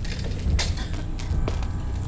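A hammer striking glass wrapped in a cloth on a hard floor: two muffled blows, about half a second in and again about a second and a half in, over a steady low rumble.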